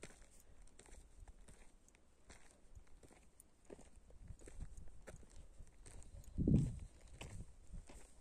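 Footsteps on dry, cracked clay ground, an irregular series of short scuffs about one every half second to second. There is one louder, deeper thump about six and a half seconds in.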